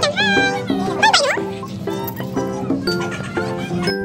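Background music of plucked strings like a ukulele or guitar, with a young child's high-pitched squeals over it in the first second and a half.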